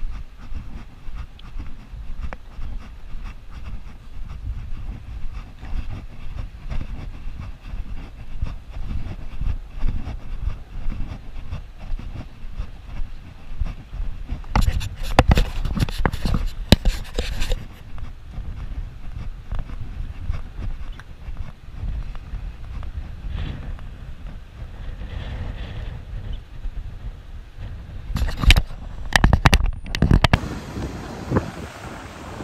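Wind buffeting a chest-mounted action camera's microphone, a steady low rumble. Clusters of sharp crackles come in about halfway through and again near the end.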